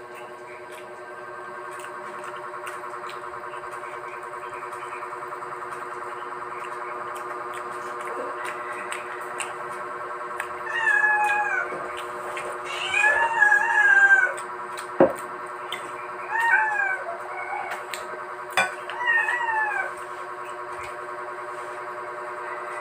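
Domestic cat meowing repeatedly, about five meows in the second half, some drawn out and bending in pitch. Under the meows there is a steady droning tone and an occasional sharp click.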